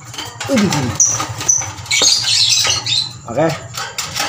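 A lovebird being grabbed by hand in its cage: two short, high squeaks about a second in, then a burst of shrill calls and scuffling around the middle.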